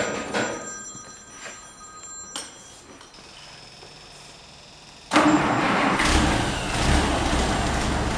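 Rebuilt six-cylinder petrol engine of a 1943 M8 Greyhound armoured car starting out of gear: a few clicks and a faint high whine, then about five seconds in it fires with a sudden loud burst and settles into a steady low-pitched idle, purring.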